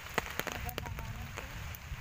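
Steady rain, with drops tapping irregularly on an umbrella overhead.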